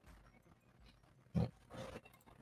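Quiet room tone with a short, low grunt from a man's voice about one and a half seconds in, followed by a soft breathy noise near the end.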